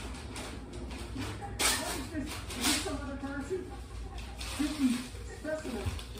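Indistinct background voices talking. There are two short hissing bursts, about a second and a half and about two and a half seconds in.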